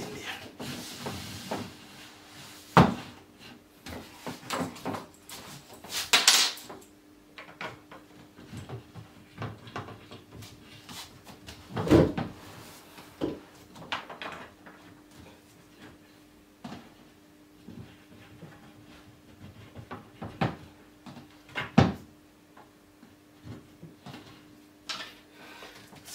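Wooden flat-pack furniture panels and rails being handled and fitted together: scattered clicks and clunks, with three louder knocks spread through and a brief scrape about six seconds in. A faint steady hum runs underneath.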